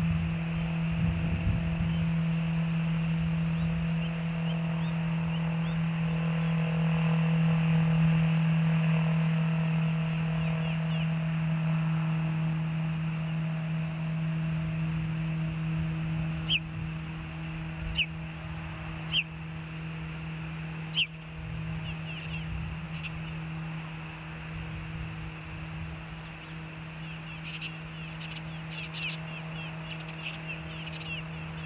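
Freight train passing: a low rumble under a steady hum, loudest about eight seconds in and fading over the second half. A few sharp clicks come midway and faint high chirps near the end.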